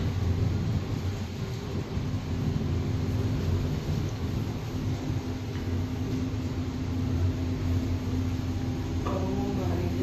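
Glass passenger elevator car running steadily as it climbs, a low hum with a steady higher tone under a hiss. Faint voices come in near the end.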